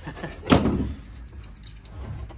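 A single hard knock about half a second in, with a short tail of lighter scraping: the trunk's fibreboard floor panel being lifted and knocked against the car's trunk.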